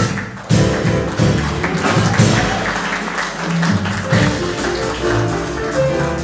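Live acoustic jazz band playing: Kawai grand piano, double bass and drums. The music thins out for a moment right at the start, then the band comes back in with a strong accent about half a second in and plays on.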